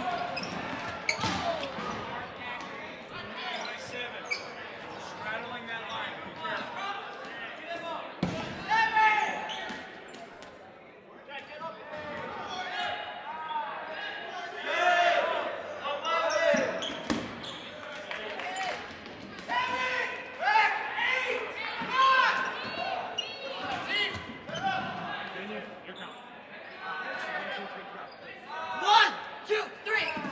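Dodgeball play in a large, echoing gym: rubber dodgeballs thrown, smacking and bouncing on the hardwood floor, with players shouting and calling out. One louder smack comes near the end.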